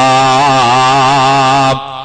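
A man chanting one long, held melodic line, his voice wavering up and down in pitch, breaking off about three-quarters of the way through.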